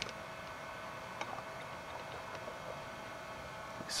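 Faint steady room hum and hiss with a sharp click at the start and a few small ticks about a second in.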